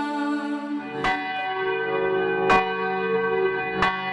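Bells struck three times, about a second and a half apart, each strike ringing on over a sustained bell-like drone, as part of devotional background music.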